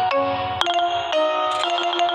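Instrumental background music: held melody notes over a quick, even run of short notes, with the notes changing about half a second in.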